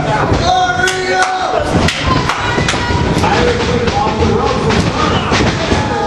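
Wrestlers' impacts in the ring, a series of sharp slaps and thuds as a heavyweight is taken down onto the ring mat, over shouting crowd voices.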